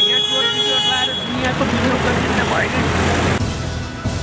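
A vehicle horn sounding one steady held note for about the first second and a half, over road traffic noise and a man's voice.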